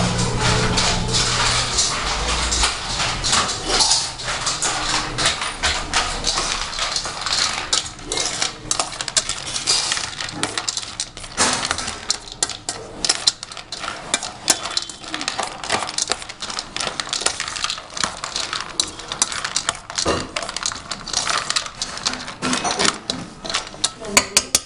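Metal spoon stirring chopped food in a stainless steel bowl, with rapid, irregular clinks and scrapes of metal on metal.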